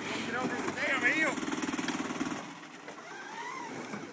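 Gas golf cart engine running hard under load as the cart tries to climb a loose chert pile, then falling away about two and a half seconds in as the climb fails.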